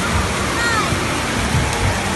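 Steady rush of falling and splashing water from an indoor water park's play structure, with voices calling faintly over it about half a second in.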